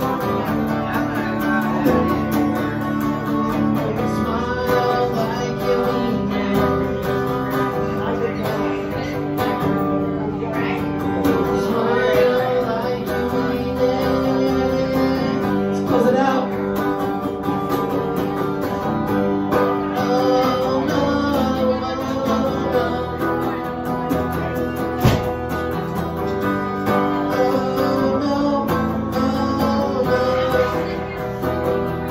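Hollow-body electric guitar played live, chords and picked notes ringing on steadily.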